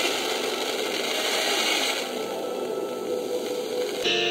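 A portable FM radio tuned to a weak, distant station received by E-skip: steady heavy static hiss with faint classical music barely coming through.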